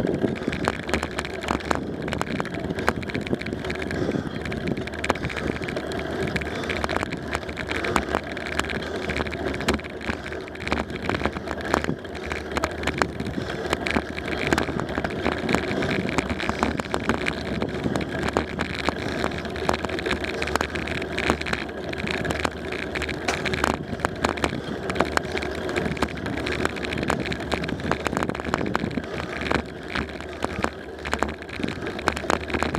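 Bicycle riding on asphalt: a steady rumble of tyres and road with wind on the microphone, and frequent small rattles and clicks all the way through.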